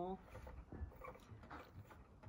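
Faint handling sounds of a plastic teaching clock as its hands are turned by hand, a few light clicks and rubs over a low rumble.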